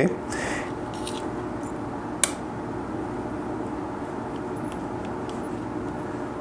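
Light handling sounds of leather strips and small metal eyelets on a stone bench: a short soft rustle near the start, one sharp click about two seconds in, and a few faint ticks, over a steady background hum.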